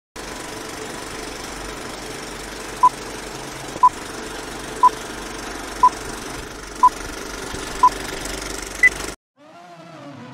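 Film-leader countdown sound effect: an old film projector running with a steady whir and crackle, and a short beep once a second, six times, then a final higher beep. It cuts off suddenly just after.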